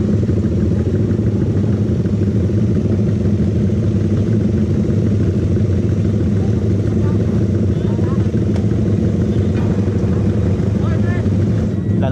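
Several small underbone motorcycle engines idling together, a steady low rumble with faint voices over it.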